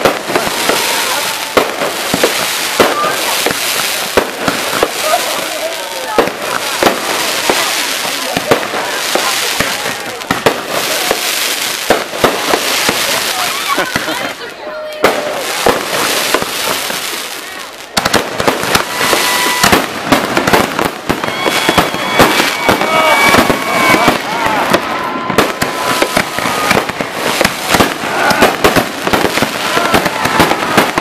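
Aerial fireworks going off in rapid succession, a dense stream of bangs and crackling from bursting shells. They ease off for a few seconds about halfway through, then start up again abruptly.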